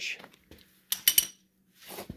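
A quick cluster of three or four metallic clinks from a hand-held steel socket wrench, followed near the end by a soft rustle.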